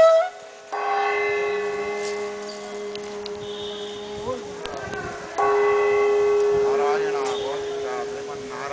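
Hand-held metal gong struck with a stick, twice about five seconds apart. Each stroke rings on with one clear steady pitch for several seconds.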